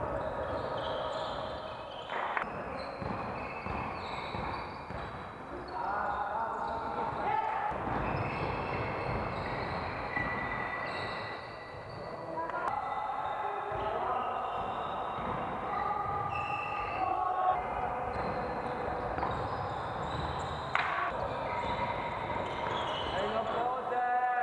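Basketball game sound: a ball bouncing on the court with players' voices calling out.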